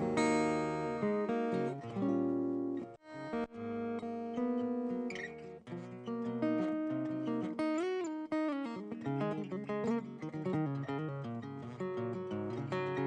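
Solo acoustic guitar playing an instrumental passage of strummed and picked chords. There is a brief break in the playing about three seconds in.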